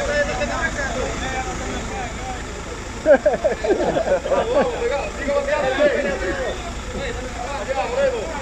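Several people talking at once, loudest from about three seconds in, over the steady low hum of an idling vehicle engine.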